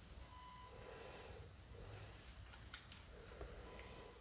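Near silence: room tone with a few faint clicks past the middle.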